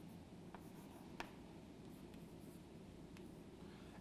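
Faint chalk writing on a chalkboard: quiet strokes with a few light taps, the sharpest a little over a second in.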